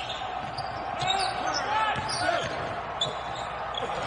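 Live basketball game sound in a mostly empty arena: the ball bouncing on the hardwood court, with voices in the background.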